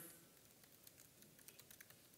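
Faint laptop keyboard typing: irregular, quick key clicks as code is entered.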